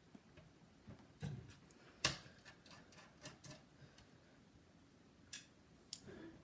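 Faint, scattered clicks and ticks of a precision screwdriver working the small screws that hold a laptop's cooling fan, with one sharper click about two seconds in and a couple more near the end.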